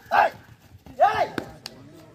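Short, loud yelping calls: one right at the start and another about a second in, each a quick rise and fall in pitch, followed by a couple of sharp clicks.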